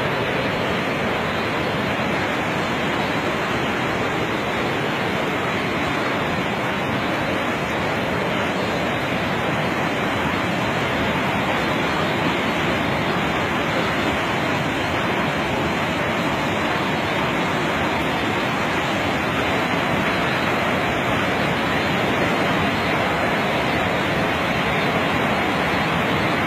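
Fast-flowing floodwater rushing past in a loud, steady rush of noise that does not let up.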